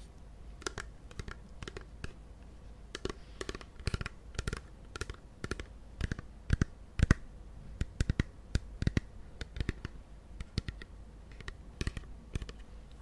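Fingers and nails tapping and clicking on a frosted plastic Etude House toner bottle and its plastic cap, close to the microphone. The taps come in an irregular run of a few per second, the loudest about two-thirds of the way through.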